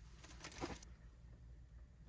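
A short rustle of handling noise about half a second in, likely cloth being moved, over quiet room tone.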